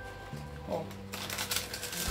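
Cardboard and plastic packaging of a wireless-earbuds box rustling and scraping as the inner tray is slid out of its cardboard sleeve, starting about a second in.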